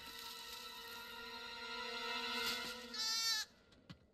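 Soft held music tones that swell a little, then a short goat bleat about three seconds in, after which the sound cuts off suddenly.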